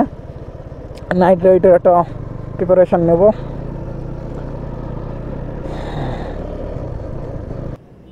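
Motorcycle engine running under way, with steady wind and road noise from the rider's seat; the sound cuts off suddenly near the end.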